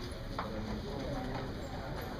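Chalk tapping and scraping on a blackboard as words are written, with a sharp tap about half a second in.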